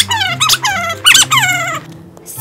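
Cartoon-style squeaky-toy sound effects: a quick run of about six short, high squeaks, several sliding down in pitch, that stop just before the end.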